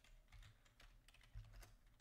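A few faint keystrokes on a computer keyboard, typing out a control name.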